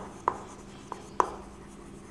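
Chalk writing on a chalkboard: three sharp taps of the chalk in the first second or so, with faint scraping strokes between them.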